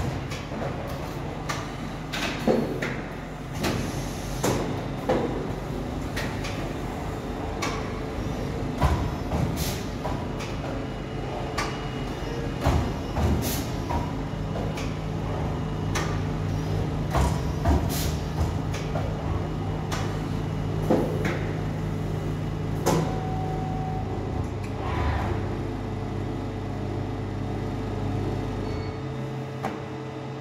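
Horizon HT-30 three-knife book trimmer running: a steady motor hum with irregular sharp clunks and knocks from the machine cycling.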